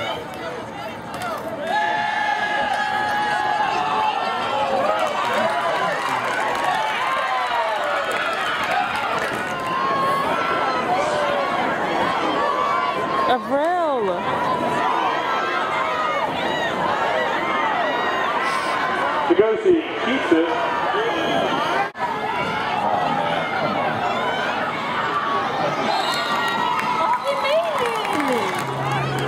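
Football crowd in the stands: a babble of many spectators' voices talking and calling out, with brief breaks where the game footage cuts.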